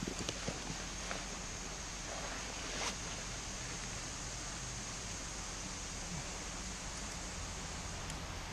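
Textile motorcycle jacket rustling as it is handled and put on, with a few small clicks in the first second and a brief louder rustle about three seconds in, over a steady faint outdoor hiss.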